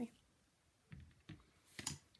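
Quiet handling sounds, then one sharp click near the end as a plastic-handled blending brush is set down on the tabletop.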